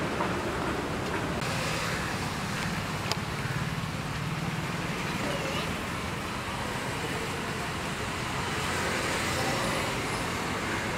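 Steady street traffic noise, a continuous roadway hum and rumble, with faint voices in the background and one sharp click about three seconds in.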